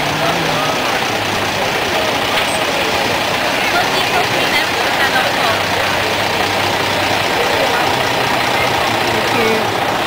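Diesel engine of a large crane truck running at low speed as it rolls slowly past, with a steady low hum, amid crowd chatter.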